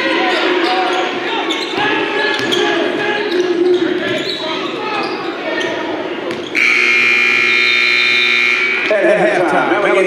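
A basketball being dribbled on a gym floor with players' voices, then about six and a half seconds in the gym's scoreboard buzzer sounds one loud steady blast of about two seconds and cuts off, signalling a stoppage in play.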